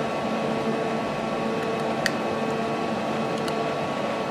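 Steady machine hum of an idling Fanuc-controlled CNC lathe with its spindle stopped, holding a few even tones. Two short clicks of control-panel keys being pressed come about two seconds in and near three and a half seconds.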